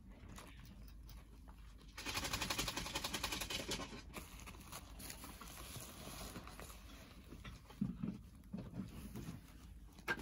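An animal digging nonstop, its claws scratching fast and rasping. A loud burst about two seconds in lasts about two seconds, then softer scratching follows, with a few low bumps near the end.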